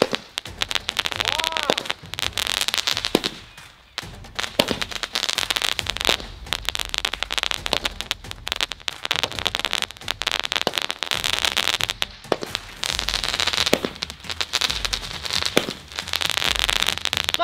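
Sky-shot fireworks firing one after another: a long run of sharp bangs and dense crackling bursts, with a short lull about four seconds in.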